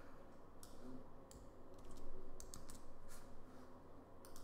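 Computer keyboard keystrokes and mouse clicks: irregular sharp clicks, some coming in quick groups of two or three.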